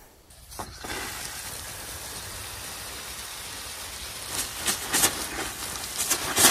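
Garden hose spray wand showering water onto a flower bed: a steady hiss of spray on leaves and blooms starting about a second in, with a few louder spurts from about four seconds in.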